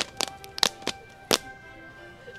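A cheer squad's hand claps closing a cheer: about six sharp, irregularly spaced claps, with faint steady musical tones behind them.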